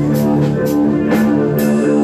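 Rock band playing: guitar chords held over a drum kit, with cymbal or snare strokes about twice a second.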